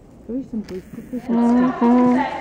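A person's voice speaking, with long drawn-out vowels held in the second half and louder there.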